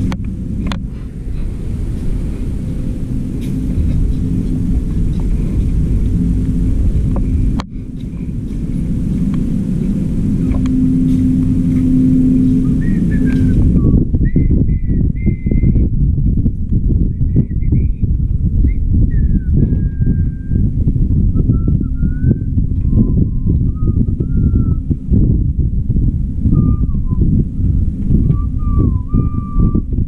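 A steady hum with a held low tone and hiss, which stops about halfway. After that, small birds chirp in short whistled notes over a low, uneven rumble.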